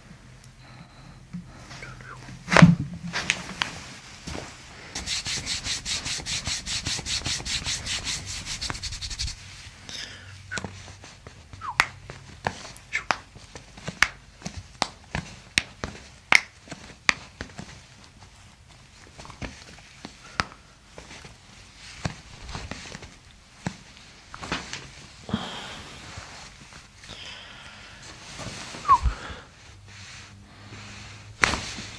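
A single sharp crack of a chiropractic neck adjustment about two and a half seconds in, followed by a few seconds of fast, even rattling. After that come scattered small clicks and the rub of hands on skin and the padded table, picked up close to the microphone.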